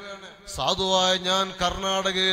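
A man's voice chanting swalath (blessings on the Prophet) in a melodic, drawn-out way over a steady low held tone. It dips briefly and resumes about half a second in.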